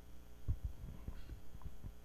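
Handheld microphone handling noise: a series of irregular low, dull thumps over a steady electrical hum.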